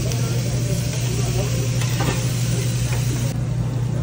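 Marinated meat sizzling on a tabletop Korean barbecue grill over a steady low hum, with a few light clicks of metal tongs. The sizzle drops away sharply a little over three seconds in.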